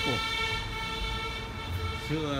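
A long, steady horn-like tone held at one pitch for about two seconds, stopping near the end.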